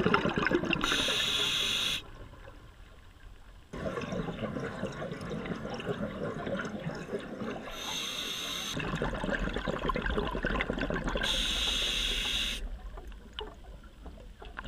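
Scuba diver breathing through a regulator underwater: three short, high inhalation hisses, each set among long rushes of exhaled bubbles, with a brief lull after the first breath in.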